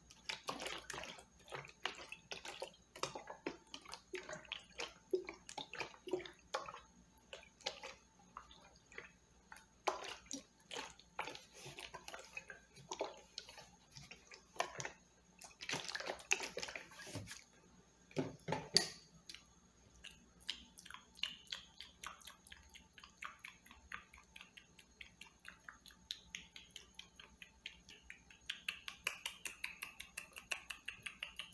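Close-miked ASMR handling sounds: a rapid, irregular run of soft clicks, taps and crackles as an object is handled at the microphone, with a few louder knocks around the middle.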